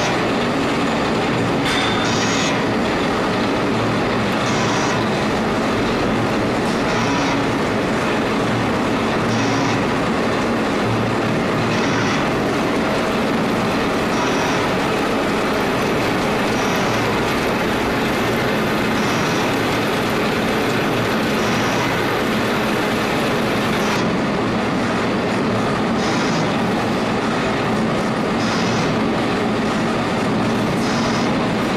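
Metal-cutting machine tools running in a machine shop: a loud, steady mechanical din, with a short high-pitched sound recurring about every two and a half seconds.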